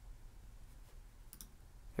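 Faint computer mouse clicks: a couple of quick clicks about one and a half seconds in, over a low steady room hum.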